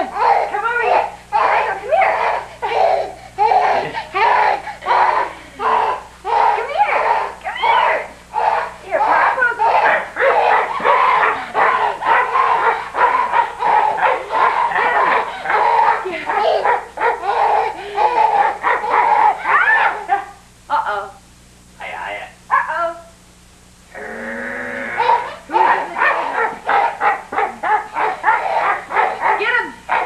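People's voices going on almost without a break in a quick rhythmic stream, dropping away briefly about two-thirds of the way through before picking up again.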